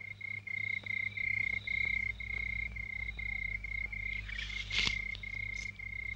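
A cricket chirping in a steady run of short, even pulses, about three a second, over a faint low hum, with a brief rustle about four and a half seconds in.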